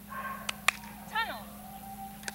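Border collie giving a single short bark about a second in, during its agility run, with two sharp clicks just before it.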